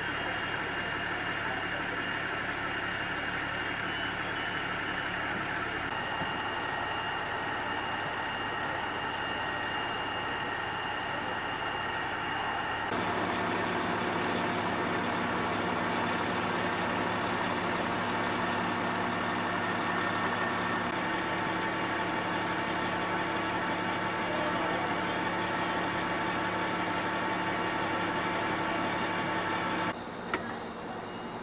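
Fire engines idling at the scene: a steady engine hum with several constant whining tones, the mix of tones shifting abruptly a few times.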